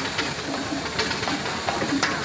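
Steam roller moving slowly under its own steam: a steady steam hiss with a few soft knocks from the engine.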